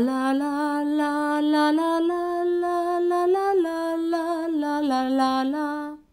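A woman singing a slow melody legato, each note gliding straight into the next without a break, rising over the first couple of seconds and easing back down near the end. The singing stops abruptly at the end.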